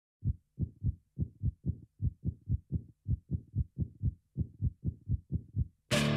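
A fast heartbeat sound effect: short, low thumps in lub-dub pairs, about two beats a second, with silence between them. Loud music cuts in suddenly at the very end.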